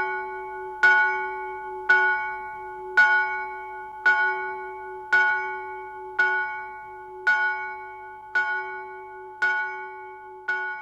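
A single bell tolling at one pitch, about once a second. There are about ten strikes, each ringing on into the next, and they slowly grow quieter.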